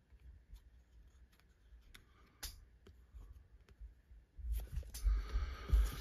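Hard plastic card-slab pieces and a plastic card sleeve being handled: faint scattered light clicks, then louder rustling and bumps of plastic about four and a half seconds in.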